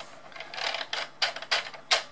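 Plastic hose reel on a Bruder Scania toy fire truck clicking as the hose is pulled off and the reel turns. The clicks come irregularly, about five in two seconds, and the loudest falls near the end.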